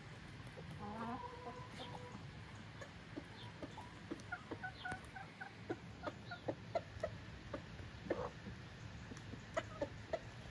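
Domestic chickens clucking while they feed. There is a drawn-out call about a second in, then a quick run of short calls, and many short, sharp clucks through the second half.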